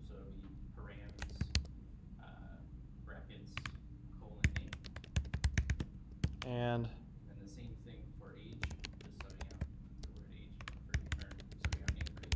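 Typing on a computer keyboard: several bursts of quick key clicks with short pauses between them, over a steady low hum.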